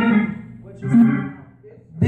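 A man's voice through a church PA, half-sung, half-preached. The tail of a held note fades in the first half-second, then a short, loud vocal phrase comes about a second in, with faint music beneath.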